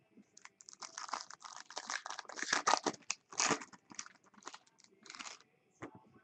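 Foil wrapper of a Bowman Chrome baseball card pack crinkling and crackling as it is torn open by hand. A dense run of rustling peaks about halfway through, and a shorter burst comes near the end.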